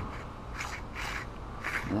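Plastic rudder foot pedal of a sea kayak being slid along its rail by hand, giving a few short, faint scrapes.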